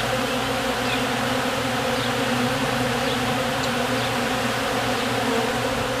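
Steady, even buzzing of a large crowd of honey bees flying around a tub of broken honeycomb, cleaning out the leftover honey.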